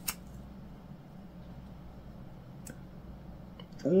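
A green 3D-printed plastic test piece with 3D honeycomb infill being bent hard by hand, giving one sharp click just after the start and a couple of faint clicks near the end as the plastic strains under the load. A low steady hum sits under it.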